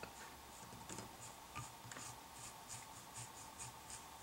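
Small bristle brush lightly stroking craft-fur fibers on a wire dubbing brush: a faint, even run of soft brushing strokes, about three a second.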